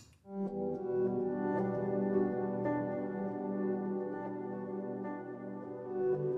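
The Eclipse atmosphere pad layer of the Fracture Sounds Midnight Grand sampled piano, played from a keyboard: a warm, sustained chord that swells in a moment after the start and holds steady, without piano hammer attacks.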